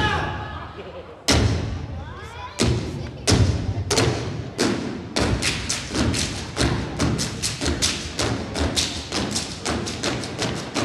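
Step team stomping and clapping on the stage: a few loud strikes spaced about a second apart, then a fast, even rhythm of strikes from about halfway on.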